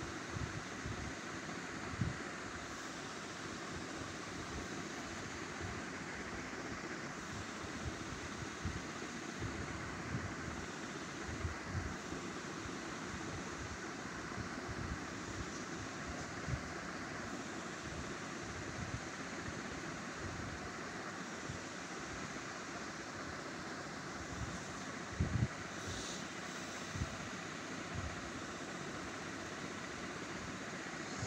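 Steady background noise with no speech, broken by a few soft low thumps; the clearest is a quick double knock about 25 seconds in.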